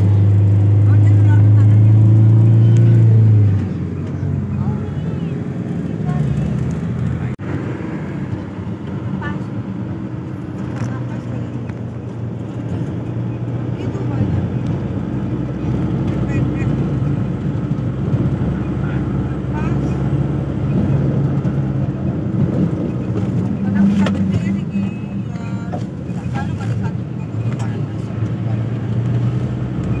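Engine and road noise of a moving vehicle, heard from inside it. A steady low drone holds for the first three and a half seconds, then drops away into a rougher rumble that rises and falls.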